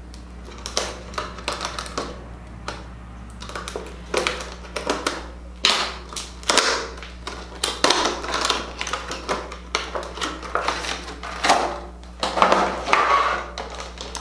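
Tightly sealed packaging of a makeup brush set being wrestled open by hand: a run of irregular crackles and snaps, with louder bursts around the middle and near the end.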